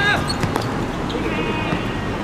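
A football being kicked on an outdoor hard court, with a few sharp thuds about half a second in. Players call out briefly at the start and again near the end.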